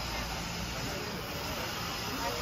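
Steady rushing background noise, even throughout, with faint voices under it.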